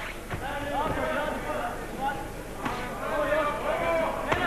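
Crowd voices in a boxing hall during a round, with two sharp thuds of punches landing, one right at the start and one near the end.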